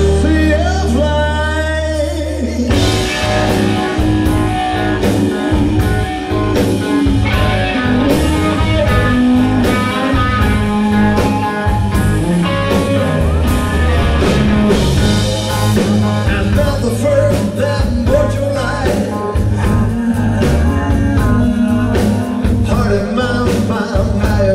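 Live southern rock band playing on electric guitars, bass and drums. It opens on a held low note under a bending melodic line, and the full band with drums comes in about three seconds in, then plays on steadily.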